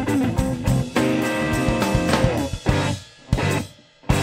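Live blues-rock trio playing: electric guitar on a Stratocaster-style guitar, with bass and drum kit. About three seconds in the band drops out, lands one more short hit together, then stops for a moment.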